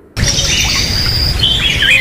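Small birds chirping and whistling, with short rising and falling calls, over a loud, steady rushing noise. Both start abruptly just after the beginning.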